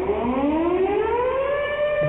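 A siren winding up, its pitch rising over about a second and a half and then holding steady.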